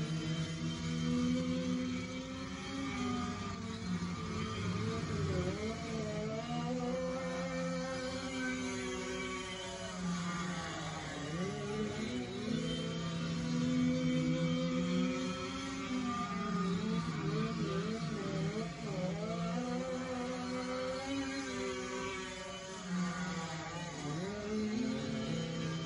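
Go-kart engines buzzing, their pitch rising and falling again and again as the karts speed up and slow down.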